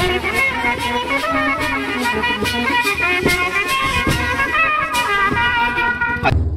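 Wedding brass band playing: a wind-instrument melody of trumpet and clarinet over a steady drum beat, about two to three beats a second.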